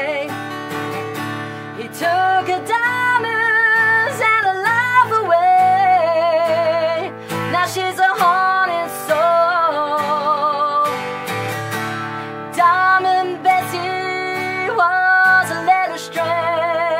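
Two acoustic guitars strummed while a woman sings long held notes with a wavering vibrato: a live country song.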